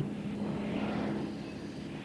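Steady drone of a moving car's engine and road noise, with a slight swell of hiss around the middle.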